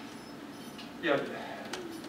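Quiet meeting-room tone, broken about a second in by one short, low murmured "yeah".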